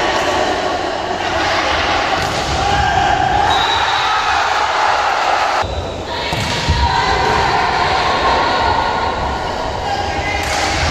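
A volleyball being struck several times during play, under continuous shouting and calling from players and spectators.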